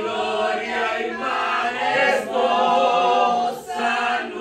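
A man and a woman singing a hymn together in long held notes, with a short break for breath near the end.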